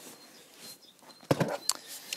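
A few sharp clicks and knocks, bunched together partway through, as a cordless drill is picked up off gravel and handled; the drill's motor is not running.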